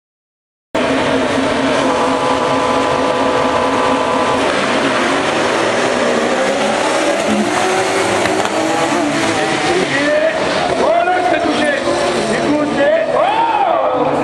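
A pack of rallycross cars on the start grid, engines held at high revs, then accelerating away together, engine notes rising and falling through the gears from about nine seconds in.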